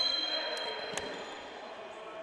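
Futsal play in a reverberant sports hall: two sharp knocks about half a second apart from the ball on the parquet floor, over a high steady tone that fades away in the first second.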